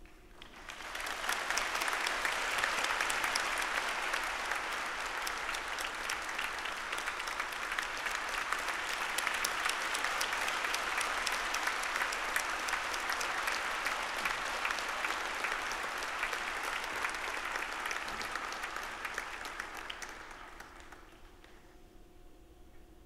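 A large audience clapping in a hall, swelling up in the first couple of seconds, holding steady, and dying away about twenty seconds in.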